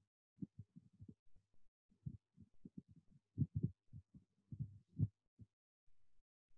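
A quick, irregular run of faint, dull taps and thuds of fingers working a MacBook, picked up through the laptop's body. They are heaviest in the second half and stop shortly before the end.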